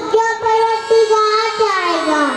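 A young boy singing into a handheld microphone, holding long, level notes with short breaks, then sliding down in pitch as the phrase ends.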